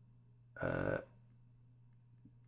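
A man's short, low vocal sound, about half a second long, just after half a second in. It sounds like a half-spoken word or throaty noise between the lyric words he is reading out slowly. Under it runs a faint steady low hum.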